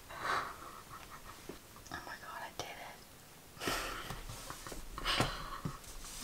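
Quiet, breathy whispering and exhaling from a nervous young woman, in several short bursts a second or so apart, muffled behind her hand.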